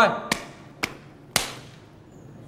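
Three sharp slaps of hand on hand about half a second apart, the last the loudest: two men slapping palms together to seal an agreement.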